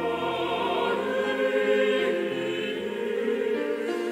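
A mixed choir singing a Korean sacred choral piece in several parts, with held notes that change every second or so.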